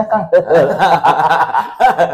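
Two men laughing and chuckling together, mixed with a little talk.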